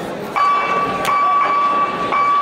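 A steady horn or buzzer tone starts a moment in and holds with brief breaks, signalling the start of the round.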